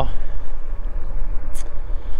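Steady low rumble of wind on the handlebar camera's microphone and tyre noise from an e-bike rolling along a rough asphalt road, with a brief hiss about one and a half seconds in.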